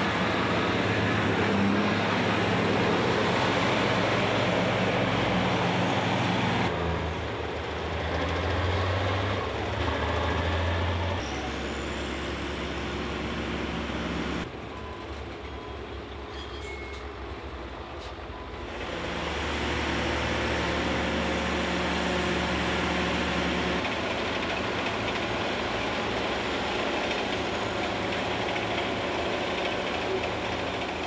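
Diesel engines of heavy road-building machines, a Caterpillar motor grader and compaction rollers, running steadily under work. The engine sound changes abruptly several times, with a quieter stretch about halfway through.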